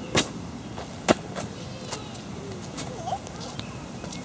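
A few sharp taps, the loudest about a second in, over steady low background noise: an inflatable plastic beach ball bouncing and rolling on concrete pavement.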